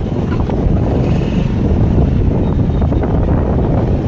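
Wind buffeting the camera's microphone while it moves outdoors, a steady loud low rumble.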